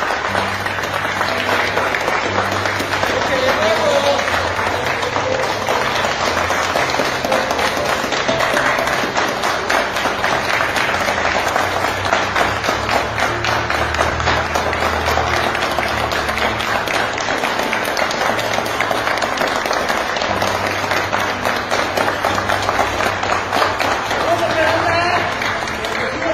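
A group of people applauding, dense and unbroken for the whole stretch, with music underneath.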